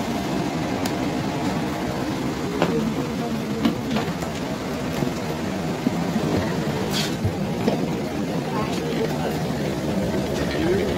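Steady hum inside an airliner cabin, with a few sharp clicks and knocks along the way.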